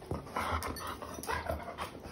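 German shepherd puppies making a few short, breathy dog sounds close by as they move around and nose at the floor.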